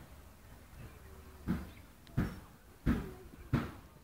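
A horse's hooves thudding on the sand arena footing at a trot. There are four dull beats in a steady rhythm of about one and a half a second, starting about a second and a half in and getting louder as the horse comes closer.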